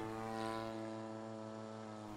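Single-cylinder two-stroke DA35 gas engine and propeller of an RC Yak 54 aerobatic plane in flight, a faint steady drone at one pitch that slowly fades as the plane climbs away.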